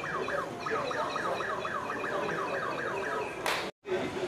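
A pitched, alarm-like tone that slides downward over and over, about four times a second. Near the end it breaks off into a short burst of noise and a sudden cut.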